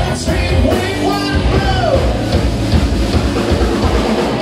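A heavy metal band playing live: distorted electric guitars over a drum kit, with a melodic line gliding up and down about a second in.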